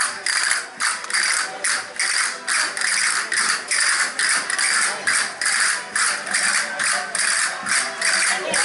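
Castanets played by a group of dancers together, in repeated rattling rolls about two or three times a second.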